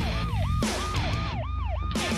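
Police car siren in a fast yelp, its pitch sweeping down and back up about three times a second.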